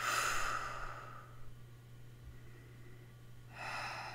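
A woman's long breathy sigh out, lasting about a second and a half, then a softer breath in near the end. A steady low electrical hum runs underneath.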